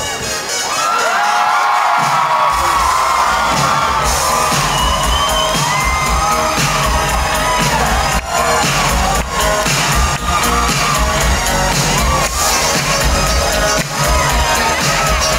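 A concert crowd cheering and screaming over live music played through a PA; a heavy bass beat comes in about two seconds in and carries on under the cheers.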